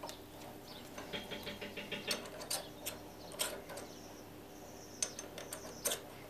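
Faint metallic clicking and light rattling from a collet nut being spun by hand onto a lathe's collet chuck, with a quick run of small ticks as the threads engage and a few sharper single clicks later as a steel rod is fitted into the collet.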